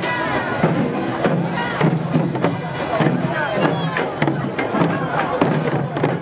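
Korean sogo hand drums struck with sticks in a steady beat by a group of dancers. Shouting voices and crowd cheering sound over the drumming.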